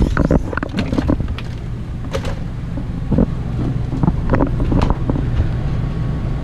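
Irregular knocks, footfalls and handling rubs as someone climbs the steps into a motorhome through its entry door, carrying the camera, over a steady low rumble.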